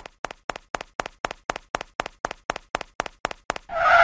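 Cartoon footstep sound effects for an animated logo: a quick, even run of taps, about five a second, growing louder, ending in a short pitched sound near the end.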